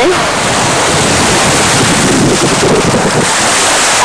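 Steady, loud rush of wind buffeting the microphone, with small sea waves washing onto a sandy shore.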